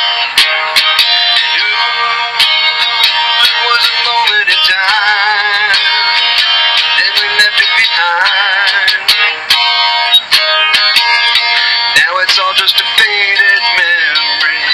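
Instrumental break of a home-recorded song played back on a small digital voice recorder: strummed guitar with a melody line that wavers in pitch, and no words sung.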